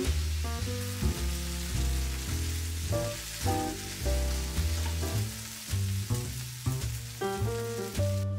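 Diced onions sizzling as they fry in a stainless steel pan, stirred with a spatula, under background music with a regular beat.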